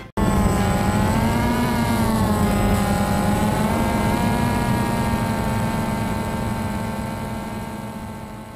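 DJI Phantom quadcopter's motors and propellers running, heard from the drone's own camera: a steady multi-tone hum whose pitch wavers over the first few seconds, then holds and fades away near the end.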